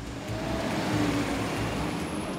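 Garbage collection truck driving by close up: a steady rush of engine and road noise with a low rumble underneath.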